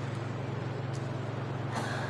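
Steady low hum with an even background hiss, no other events.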